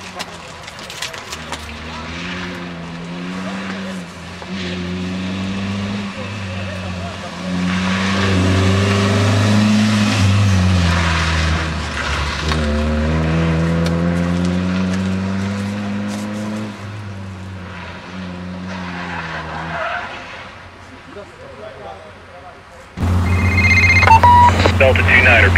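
A rally car's engine revving hard through a slalom, its pitch repeatedly rising and falling as the driver accelerates and lifts between gates. It is loudest in the middle and fades as the car moves away. About a second before the end it cuts suddenly to a different, louder sound.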